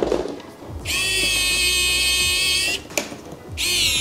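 Electric screwdriver driving a screw: a steady, high motor whine for about two seconds, then a short pause, and a second run that starts shortly before the end.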